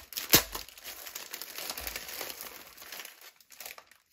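Foil-lined plastic bag crinkling and crackling as it is handled and its contents are pulled out. There is one sharp crackle right at the start, then the crinkling thins out toward the end.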